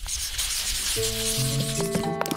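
A brushy swoosh sound effect under a paint-stroke scene transition, followed about a second in by background music with steady held notes.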